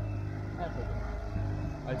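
A boat's outboard motor running steadily at trolling speed, a low, even drone.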